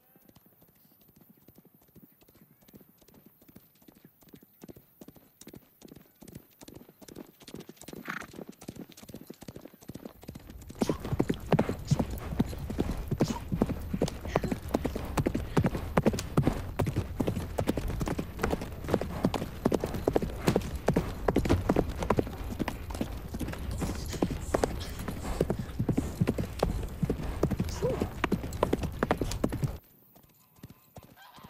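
Galloping horses' hoofbeats on grassland. They grow steadily louder as the horses approach, then about ten seconds in become loud and close, with many hooves drumming at once, and cut off suddenly at the end.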